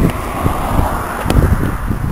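Wind buffeting and handling noise on a handheld camera's microphone as it is jostled: a rough, uneven rumble with a few faint clicks.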